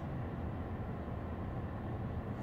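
Steady low rumble of a car's engine and road noise, heard from inside the cabin.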